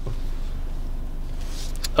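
Infiniti Q50 engine idling in park, heard from inside the cabin as a steady low hum, with a few faint clicks near the end.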